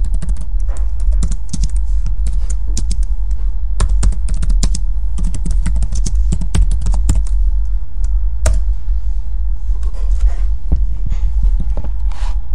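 Outro soundtrack under an end screen: a loud steady low drone with dense, irregular clicks and crackles throughout.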